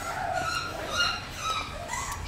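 English bulldog puppy whining in several short, high-pitched whimpers.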